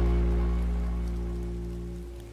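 Soft music: a held low chord slowly fading away, over a steady patter of rain.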